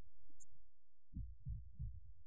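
Muffled low thumping from a live rock band, only the bass and drum end coming through, with a few heavy thumps in a row in the second half.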